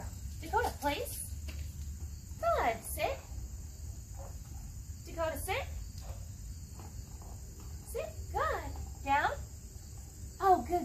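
A Mini Australian Shepherd puppy whining in about four bouts of short, falling cries, over a steady chirring of crickets.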